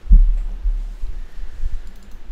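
Low thumps and rumble on the microphone: one sudden loud thump just after the start, then a few weaker low thumps through the rest of the stretch.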